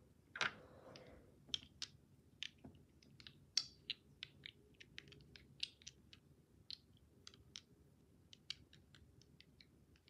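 Faint, irregular light clicks and taps, about two or three a second, with a brief louder rustle about half a second in.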